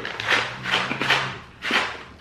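A plastic snack pouch crinkling in about four short bursts as granola is shaken from it into the mouth. A low steady hum runs underneath through the first second or so.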